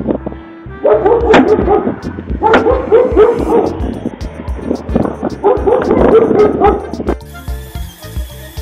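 A dog barking in three quick bouts of barks, over background music with a steady beat.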